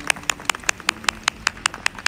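A quick, even run of sharp clacks, about five a second, from Bhutanese folk dancers.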